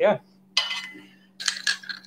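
Metal spoon clinking against the inside of a stainless steel mug as a drink is stirred: a ringing clink about half a second in, then a few quick clinks near the end.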